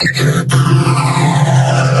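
Heavily effects-processed, distorted audio: a loud, sustained buzzing drone with many overtones, with a sharp click about half a second in.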